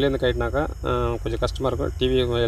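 A person talking, over a steady low hum.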